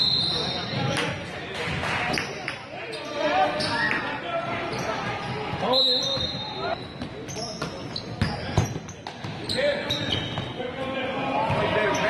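Youth basketball game in an indoor gym: the ball bouncing on the hardwood floor, with players' and spectators' voices. A referee's whistle sounds briefly at the start and again about six seconds in.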